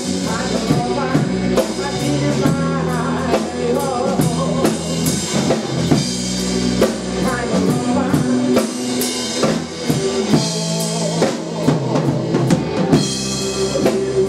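A live rock power trio playing: electric guitar, electric bass and a drum kit, with the drums prominent.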